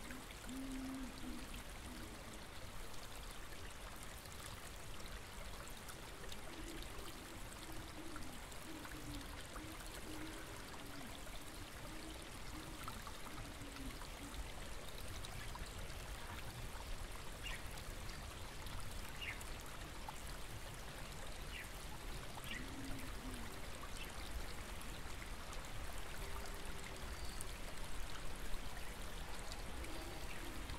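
A small stream flowing steadily, with a few faint bird calls past the middle.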